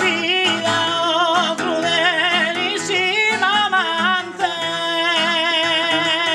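Sardinian canto a chitarra, sung unamplified: a man's voice sings a highly ornamented, melismatic line with wide vibrato over an acoustic guitar accompaniment. A little after halfway the voice settles into one long held note.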